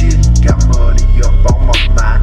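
Hip hop beat: deep sustained 808 bass notes under fast hi-hats, with snare hits about a second apart.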